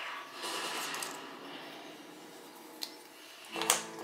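Quiet table-top handling: faint rustle and one light click about three seconds in, then a man's voice begins near the end.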